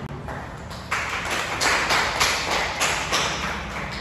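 A small group of people clapping, starting about a second in.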